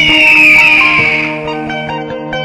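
Plucked-string background music with a loud whoosh sound effect over it at the start, its pitch falling and fading over about a second and a half.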